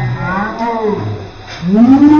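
People sitting in an ice-cold bath crying out with long, wordless groans and yells at the shock of the icy water splashed on them, the pitch swelling up and down, with a loud rising cry near the end.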